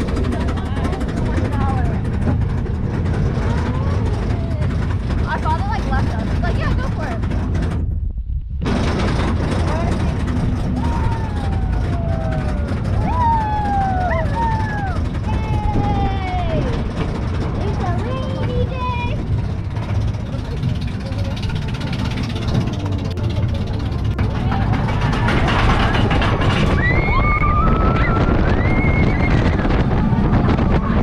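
Roller coaster car climbing its lift hill: a steady low rumble of the ride and wind on the microphone, with scattered people's voices over it. The sound cuts out briefly about eight seconds in.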